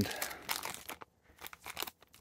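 Thin clear plastic bag crinkling as it is handled, in short scattered crackles, busiest in the first second with a few more near the end.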